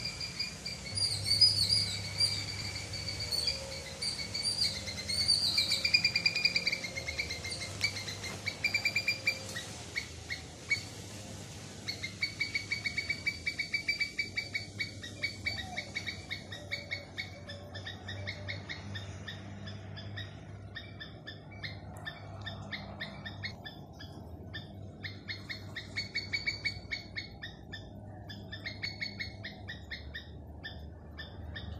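High-pitched bird-like calls: wavering whistled notes in the first third, then long runs of rapid repeated chirps, several a second, from a little before halfway to the end.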